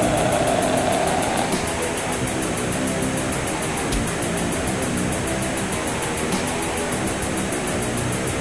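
Death/doom metal demo recording: heavily distorted electric guitars held in a dense, slow wall of sound. A high held note fades out in the first second and a half, and a single drum hit lands about halfway through.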